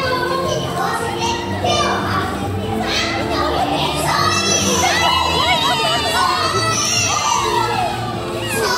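Many young children shouting and squealing in high voices over steady background music, the calls growing denser about halfway through.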